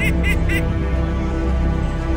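A flock of domestic ducks quacking in a quick run of short calls, about four a second, that stops about half a second in, over steady background music.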